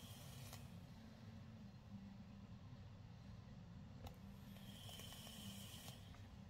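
Faint sizzle and light crackle of juice-soaked cotton wicks on the firing coils of a Hellvape Fat Rabbit RTA, as the freshly wicked coils are heated on the mod.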